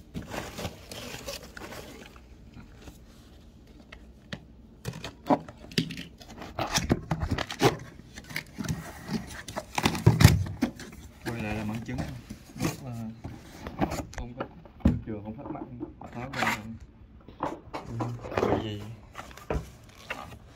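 Handling of unboxing packaging: plastic wrapping rustling and cardboard scraping, with irregular small knocks and clicks.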